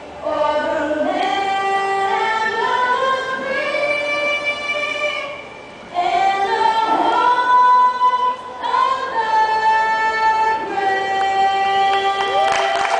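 A teenage girl singing a national anthem solo and unaccompanied into a microphone, in sung phrases with a short pause between two of them midway. The second half is mostly long held notes.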